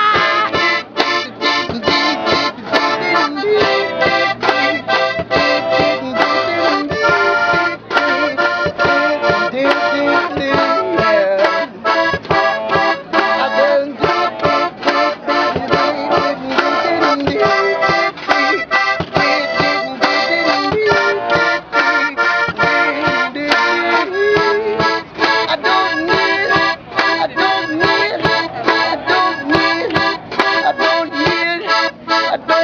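Piano accordion playing an instrumental passage, with a quick percussive beat behind it.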